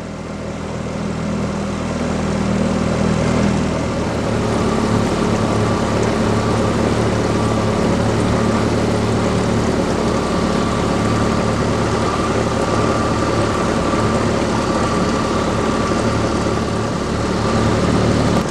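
Outboard motor of a coaching launch running at a steady pace, with an even rushing noise under it. It grows louder over the first few seconds and then holds steady.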